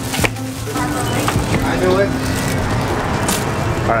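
Indistinct voices over a steady low background hum, with one sharp click about a quarter of a second in.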